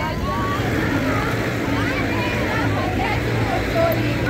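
Indistinct voices talking over a steady low rumble.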